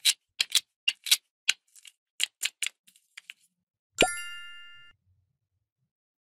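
Halves of a toy kiwi clicking and tapping as they are handled and fitted together, about a dozen quick clicks over the first three seconds. About four seconds in, one bright ding with a low dropping pop rings out and fades over about a second.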